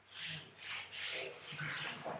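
A quick series of about five short, scratchy rubbing strokes, something being handled or rubbed.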